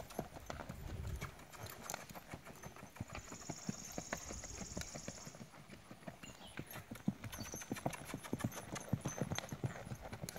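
Hoofbeats of a ridden Tennessee Walking Horse gaiting on packed dirt, a quick, steady run of muffled knocks.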